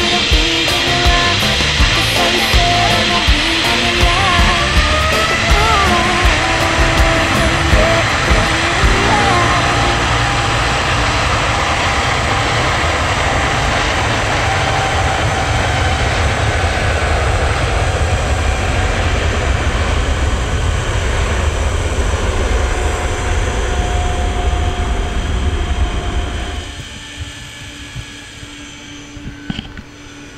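A zipline trolley runs along its steel cable while wind rushes over the rider's camera microphone, making a loud steady rush with a faint whir. Music plays over it for the first several seconds. The rush drops away sharply near the end as the ride slows toward the landing platform.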